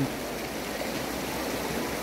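A fast, shallow glacier-fed mountain stream rushing over stones: a steady, even rush of water.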